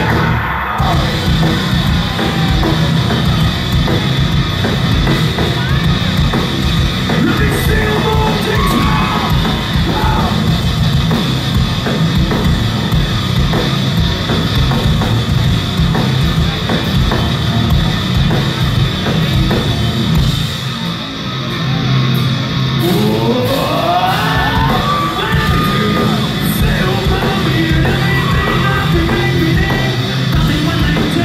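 Heavy rock band playing live at full volume, with drums, electric guitars and shouted vocals, heard from within the crowd. The loudness dips briefly about two-thirds of the way in, followed by a long rising slide in pitch.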